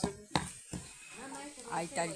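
A wooden pestle pounding toasted chiles in a mortar: a couple of sharp knocks in the first half second, then quieter.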